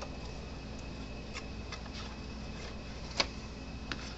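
A few light, unevenly spaced clicks and ticks from handling a fence charger's circuit board and plastic case, one sharper click about three seconds in, over a steady low hum.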